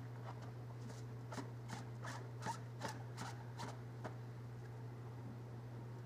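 A plastic filter-reactor canister handled in a bucket of wet carbon: a string of short plastic clicks and scrapes, about seven of them between one and four seconds in, over a steady low hum.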